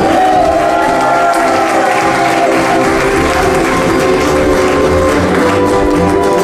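Live acoustic string band of ukuleles, archtop guitar and upright bass playing a swing tune, with the audience applauding over the music through the middle of the stretch.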